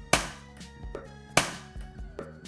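Plastic building-brick figure dropped onto a tabletop in a drop test, landing with a sharp clack twice about a second and a half apart, over quiet background music.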